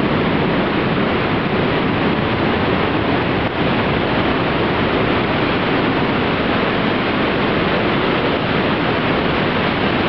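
Steady rush of a waterfall and its white-water stream, heard from inside a rock tunnel.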